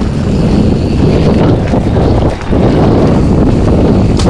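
Maxxis mountain-bike tyres rolling fast over a dirt and dry-leaf forest trail, under heavy wind buffeting on the camera microphone from the riding speed. The noise is steady, dipping briefly a little past halfway.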